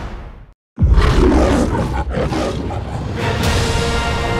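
Trailer music fades out into a moment of silence, then a loud, deep boom opens the next trailer. Dense rumbling sound design follows and gives way to sustained orchestral-style music tones near the end.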